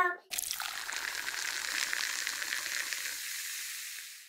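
A steady hiss with no pitch, starting just after the start and fading out near the end.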